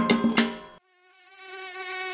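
A children's song instrumental cuts off about a second in, and a cartoon mosquito buzzing sound effect takes over: a steady, thin whine that fades in and grows louder.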